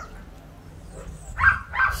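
A dog giving two short, high-pitched whimpers about a second and a half in.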